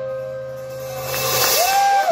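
The band's final chord ringing out on electric guitars with amp hum, fading after the last drum hits. About a second and a half in, the audience starts cheering and whooping.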